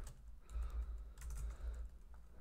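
Typing on a computer keyboard: a few light, scattered keystrokes.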